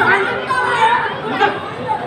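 Indistinct chatter: several people talking at once.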